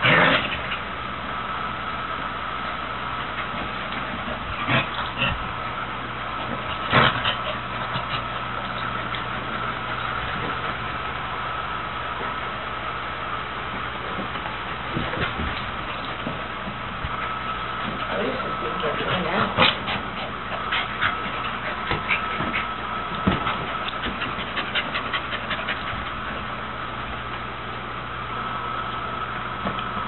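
A red heeler pup and a beagle mix play-fighting, with short dog vocalizations scattered through, the strongest near the start, about seven seconds in and about twenty seconds in, over a steady electrical hum.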